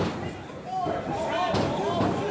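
Thuds of gloved punches and kicks landing in a kickboxing bout: a sharp hit at the start and another about one and a half seconds in, with voices calling out from ringside between them.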